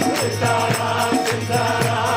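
Devotional group singing (kirtan): many voices chanting together over hand cymbals keeping a steady beat.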